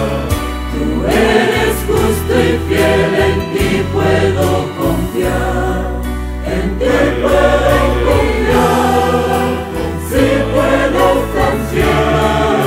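Mixed choir of men and women singing a Christian hymn in harmony, phrases rising and falling every second or two over low, sustained bass notes that change in steps.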